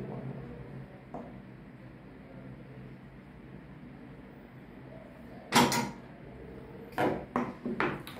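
A handheld spot welding machine firing one weld pulse through its probes into a nickel strip on lithium battery cells: a single short, loud sharp sound about five and a half seconds in, over a low steady hum. A few quieter clicks follow near the end as the probes are handled.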